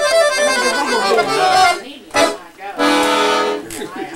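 Rossi piano accordion playing a lively run of notes that breaks off about two seconds in, then one short held chord near the end.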